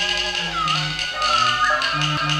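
Qinqiang opera instrumental accompaniment. A high melody line holds a note, then slides down and wavers back up, over lower sustained tones, with a couple of light percussion taps.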